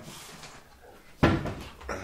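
A single sudden thud about a second in, fading quickly, amid fainter handling noise.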